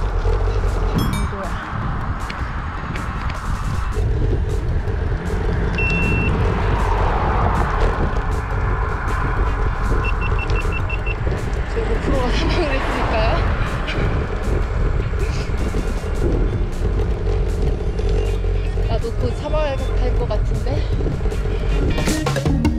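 Wind rushing over the camera's microphone while riding a road bike, a steady low rumble; a short run of high beeps about ten seconds in.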